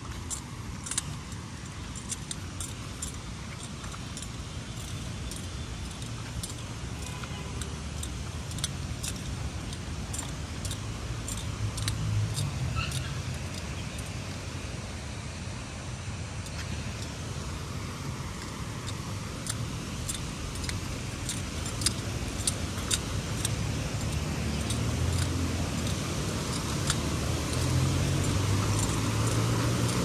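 Steady rush of a fast-flowing rocky mountain stream, growing louder towards the end, with scattered light clicks throughout.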